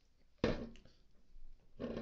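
A full aluminium energy-drink can set down on a wooden table, one short knock about half a second in.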